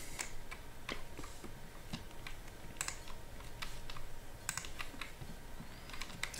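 Faint, irregular clicks of a computer keyboard and mouse, about fifteen over the span, spaced unevenly a fraction of a second apart.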